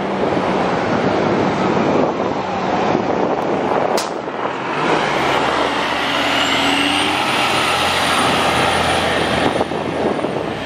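Articulated city transit bus driving past close by and pulling away, its engine running loudly and steadily. A single sharp click comes about four seconds in, and a high whine rises and holds through the second half.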